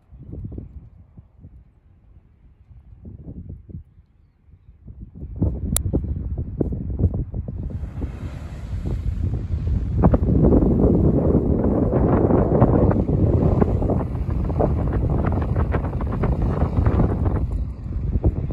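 Wind buffeting the microphone on an open beach: faint, irregular gusts at first, then loud and continuous from about five seconds in. A single sharp click sounds near six seconds.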